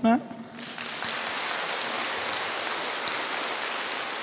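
Audience applauding: an even wash of many hands clapping that sets in within the first second and holds at a steady level.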